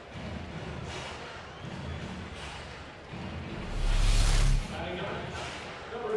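Ballpark crowd murmur and stadium ambience at a steady moderate level. About four seconds in comes one loud, roughly one-second rush of noise with a deep rumble.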